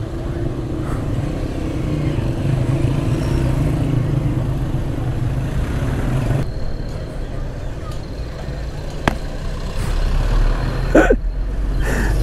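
Suzuki GS motorcycle engine running at low speed in slow traffic, a steady engine note that eases off about halfway through. A low rumble builds near the end, and a brief voice is heard just before it.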